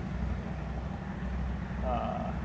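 Wind rumbling on the microphone: a steady low rumble with no clear pitch. A man says a brief "uh" near the end.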